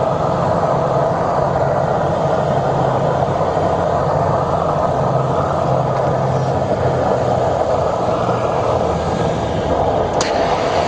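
Aircraft engines and rushing air heard inside a passenger cabin: a steady, loud noise with a low hum underneath.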